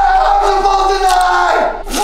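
A man's long scream held on one pitch. It falls away about one and a half seconds in, and a second cry starts near the end.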